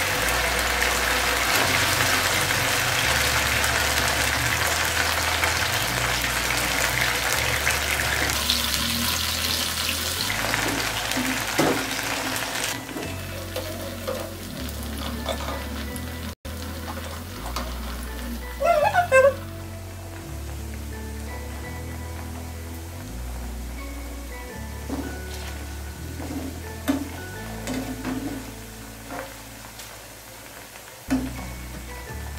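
Okra deep-frying in hot oil in a pan. The sizzle is loud at first, just after the pieces go in, and eases off after about twelve seconds. A brief louder sound comes about nineteen seconds in, and background music with a stepping bass line plays throughout.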